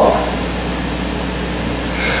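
Steady background hiss with a low hum under it, even and unchanging: room noise of an air-conditioned hall picked up through an open microphone.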